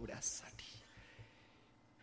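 A man's voice trailing off at the end of a word, with a short hiss just after, then a pause with only faint, fading room sound.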